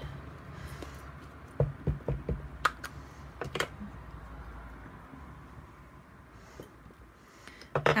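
Acrylic stamp block with a rubber stamp being handled and pressed onto a paper label on a craft mat: a handful of light knocks and clicks about two to three seconds in, then quieter handling.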